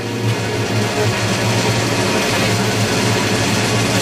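Norwegian thrash metal from a 1996 demo tape: the track's opening, with heavily distorted electric guitar in a dense, noisy wash of sound over a pulsing low end.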